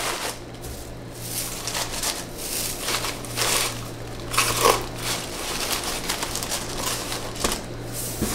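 Crinkle-cut paper shred rustling and crinkling in irregular handfuls as it is pressed and tucked into a cardboard shipping box. A steady low hum runs underneath.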